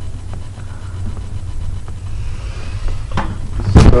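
Handling noise of a recording device being carried: a steady low rumble with a few faint clicks, then louder knocks and bumps near the end as it is handled.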